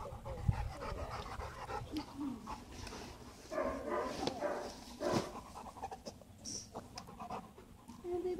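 Two dogs panting, with a sharp knock about half a second in and another about five seconds in.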